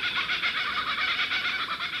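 Laughing kookaburra giving its laughing call: a steady run of rapid, repeated chuckling notes.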